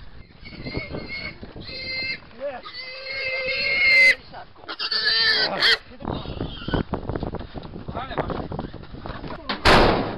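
A pig squealing in several high-pitched bursts, the longest and loudest lasting about a second. A loud thump comes near the end.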